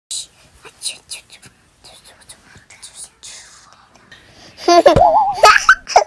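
Young children whispering in short breathy bursts, then a child's high voice breaking in loudly about four and a half seconds in, its pitch sliding up and down.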